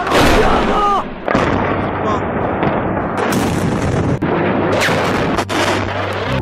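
Barrel bomb explosion: a loud blast right at the start, then a continuous rumble broken by several sharp cracks. Shouting voices can be heard in the first second.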